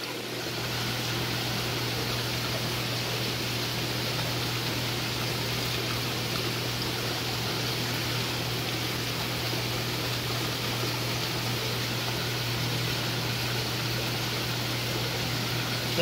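Steady rush of running water from an aquarium filtration system, with a low steady hum underneath.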